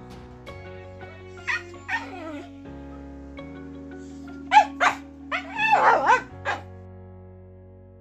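A dog barking and yipping in short, sharp calls: two early on and a quick cluster in the second half. These are the loudest sounds, over soft background music with held notes.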